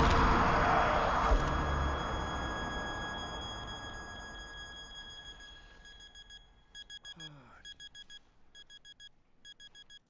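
Stadium crowd noise fading away under a steady high electronic tone. About six seconds in, the tone turns into an alarm clock beeping rapidly in short groups of about four beeps.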